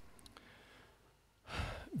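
Near silence, then about a second and a half in, a man takes a short breath in just before he resumes speaking.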